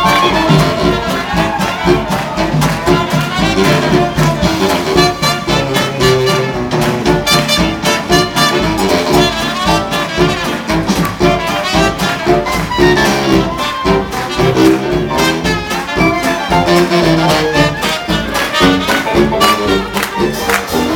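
Live hot jazz dance band playing an up-tempo swing number: brass and reeds over banjo, piano and tuba, with a steady dance beat.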